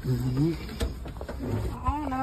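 A person's voice making short, drawn-out, wavering sounds without clear words, twice, over a low steady rumble.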